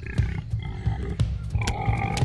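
Calls of fighting babirusa, a tusked wild pig, over background music with a fast, pulsing low drum beat.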